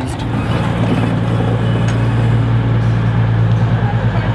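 Class 221 Voyager diesel train's underfloor engines running with a steady low drone.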